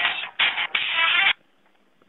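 Telephone hold music heard over a phone line, stopping abruptly a little over a second in.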